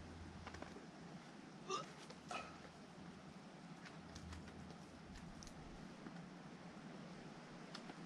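Two short, sharp grunts from a climber pulling through moves on a boulder, about two seconds in, half a second apart, with faint taps of hands and shoes on the rock.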